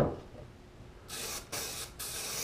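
Aerosol spray can of SEM trim black paint, warmed with a heat gun to build up its pressure, hissing in two short bursts with a brief gap between them, starting about a second in.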